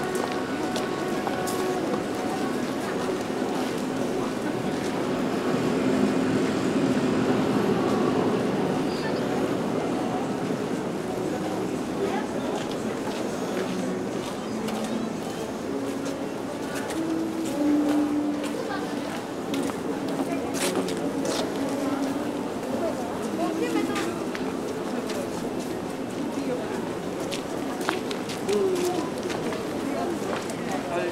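Pedestrian shopping street ambience: indistinct chatter of passers-by over a steady hubbub, with scattered short clicks and knocks.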